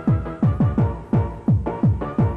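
Happy hardcore rave music: a fast four-on-the-floor kick drum, close to three kicks a second (about 170 beats per minute), each kick dropping sharply in pitch, under sustained synth chords.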